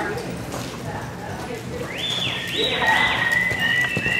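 Spectators whistling: several rising whistles about two seconds in, held and overlapping to the end, over crowd chatter and the horse's hoofbeats on the arena dirt.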